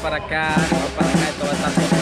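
Drums and percussion playing a short groove, with a low note repeating about four times a second.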